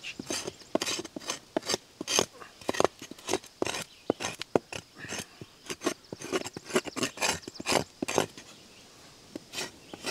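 Knife blade scraping and cutting bark off a tree trunk in quick, irregular strokes, exposing fresh wood underneath. The strokes stop about eight seconds in, with one more near the end.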